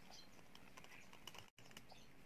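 Faint, light clicking of hands handling an opened plastic telephone handset and its wires, with a brief gap where the sound cuts out completely.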